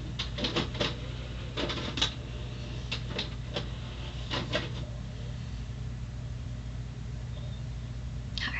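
Scattered light clicks and taps in small clusters over the first four or five seconds, over a steady low hum that then runs on alone.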